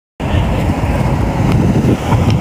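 Steady low rumble of a moving tram heard from inside a packed carriage.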